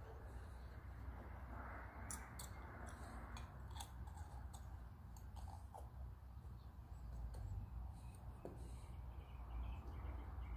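Faint, scattered light clicks and taps of small metal brake parts being handled and fitted by hand: the spring, retainer and piston going into a drum-brake wheel cylinder. A low steady hum lies underneath.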